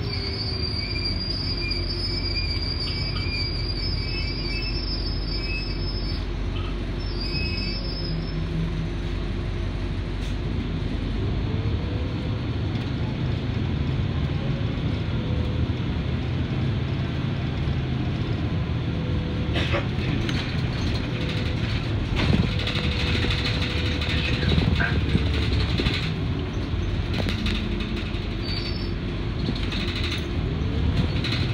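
Interior of an RTS city transit bus under way: engine and drivetrain rumble over road noise, with a whine that rises as the bus pulls away about a third of the way in, holds steady, then falls as it slows near the end. A faint high whistle sounds in the first few seconds, and the body rattles during the second half.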